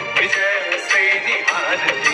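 A Hindi song about dawn and awakening: a sung melody over instrumental backing, with sharp beats.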